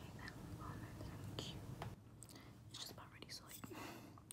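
A woman whispering faintly, with soft mouth clicks and small ticking clicks.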